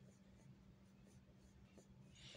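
Faint pencil strokes scratching on paper as a figure is sketched, over a faint steady low hum.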